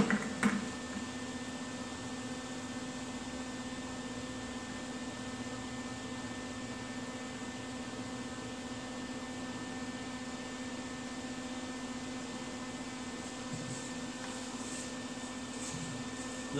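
Steady machine hum with a fan-like noise behind it, unchanging throughout. There are a couple of light clicks at the very start as metal parts are handled.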